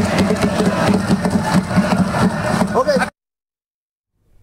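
Many voices talking and shouting over one another in a legislative chamber, a continuous clamour that cuts off abruptly about three seconds in.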